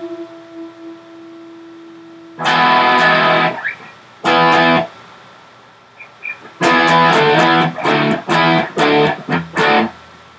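Electric guitar played: a held note fades out, then a loud chord rings for about a second, a second short chord follows, and from about two-thirds of the way in comes a run of short, sharply cut-off chord stabs.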